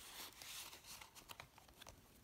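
Faint rustling of paper envelopes and journaling cards being handled, with a few light ticks.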